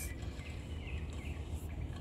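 Outdoor garden ambience: a steady low rumble with faint bird calls in the middle.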